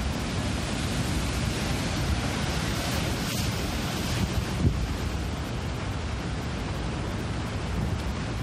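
Wind buffeting the microphone over the steady rush of storm surf, with one brief low thump a little past halfway.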